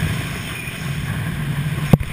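Steady wind rushing over a helmet camera's microphone while descending under an open parachute, with a sharp click just before the end.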